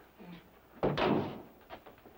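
A door shutting with a single knock about a second in, followed by a brief rush of noise as it settles.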